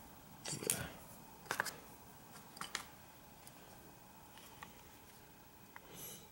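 A few faint clicks and light knocks as a billet aluminium carburetor is picked up and set down on shop towels over cardboard, about half a second, a second and a half, and two and a half seconds in, with fainter ticks later over quiet room tone.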